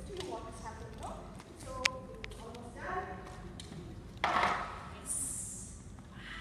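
Indistinct voices talking in a large hall, with a single sharp tap about two seconds in and a short louder noise a little past the middle.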